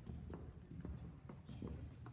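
Footsteps on a hard tiled church floor, a string of light, irregular clicks over a low rumble.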